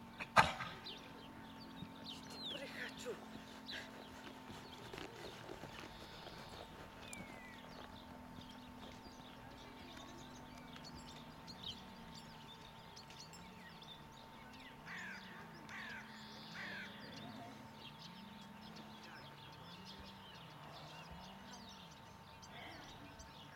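Open-air ambience with crows cawing and small birds calling, and a single sharp knock about half a second in. A faint low hum wavers up and down through the second half.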